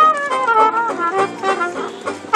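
A small street jazz band playing, with a trumpet and an alto saxophone carrying the melody over banjo and double bass. The phrase thins out near the end.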